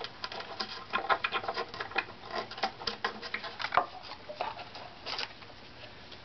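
Light, irregular clicks and taps of a wooden violin body and neck being handled and set down on a workbench.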